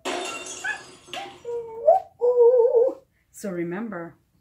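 A dog howling along in two drawn-out, wavering calls, with a woman's voice briefly near the end.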